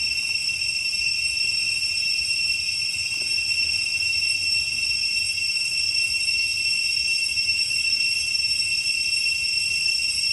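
Steady, high-pitched insect chorus droning without a break.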